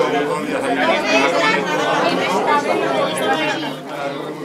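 Crowd chatter: many people talking at once, their voices overlapping into a steady hubbub.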